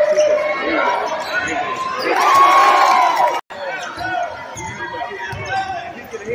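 A basketball dribbled on a gym's hardwood floor among crowd chatter and shouts. The crowd swells louder about two seconds in; the sound drops out for an instant halfway through, then the dribbling thuds and chatter go on.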